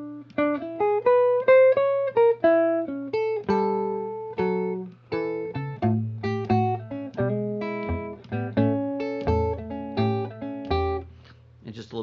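Hollow-body archtop electric guitar played with a thumb pick: a blues phrase that opens with a rising run of single notes, then moves to low bass notes alternating with higher notes, and stops about a second before the end.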